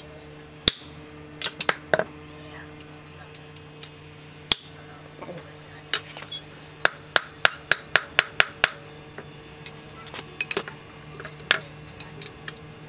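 Hand hammer striking a knife blade made from a piece of brake disc rotor on a steel post anvil: sharp ringing metal-on-metal blows, scattered at first, then a quick run of about eight in the middle and a few more near the end.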